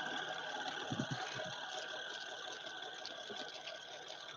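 Oral irrigator (water flosser) running steadily with its jet in the mouth.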